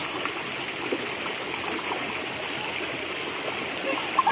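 Shallow rocky stream running steadily over stones, an even sound of flowing water.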